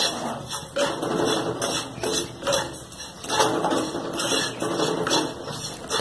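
A wooden spatula scraping dry-roasted semolina and sugar around a nonstick kadhai in repeated stirring strokes, roughly one a second. The mix is being fried dry with the sugar starting to melt, before any water goes in.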